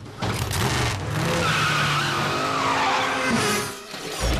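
Cartoon sound effect of a race car's engine revving and tyres screeching as it speeds away, with a whine that falls in pitch through the middle as it pulls off. Background music plays under it.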